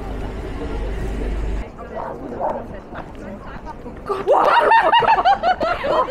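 Street hubbub with low traffic rumble that cuts off about a second and a half in. About four seconds in, a woman lets out a loud, high-pitched shriek of fright that turns into laughter, startled by a man disguised as a bush.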